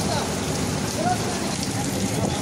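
Heavy rain falling steadily on a street and hard surfaces.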